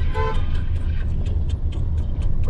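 Steady low rumble of a running vehicle, with a short horn toot near the start and a fast, regular ticking over it.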